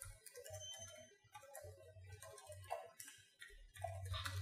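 Faint computer keyboard typing: scattered light key clicks.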